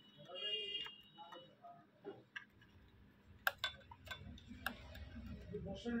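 Irregular light clicks and taps, about half a dozen spread through the middle and end, with a faint voice in the background early on.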